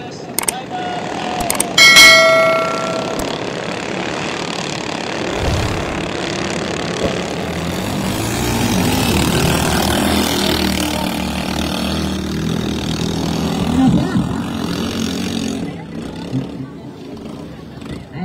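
A few clicks, then a ringing chime lasting about a second near the start. After that comes a long stretch of noisy sound from racing motorized outrigger boats (bancas) under way, with voices mixed in that fade near the end.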